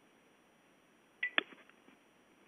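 Quiet room tone, then a little over a second in a short high beep followed at once by a sharp click.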